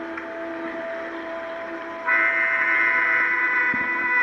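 Ambient electronic music played live on synthesizers: sustained drone tones, joined about halfway through by a sudden, louder chord of bright high tones that holds steady.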